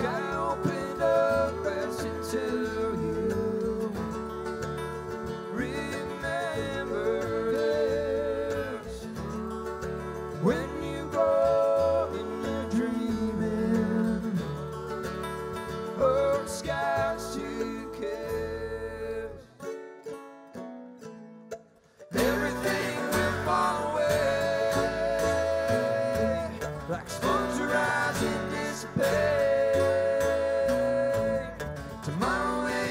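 Live bluegrass string band playing: mandolin, banjo, acoustic guitar and upright bass. The music drops out for about two seconds around twenty seconds in, then comes back in.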